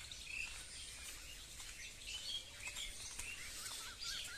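Several wild birds chirping and calling faintly, short scattered chirps with a wavy warbling trill near the end.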